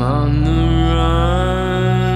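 Music: a slow song intro with one held note that glides upward at the start and then holds, over a steady low drone.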